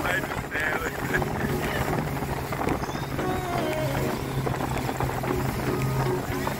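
A speedboat underway with its engine running at a steady drone, over the rush of wind and water. Voices and faint music sound over it.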